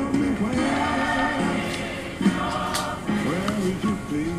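Gospel music: a choir singing over instrumental backing.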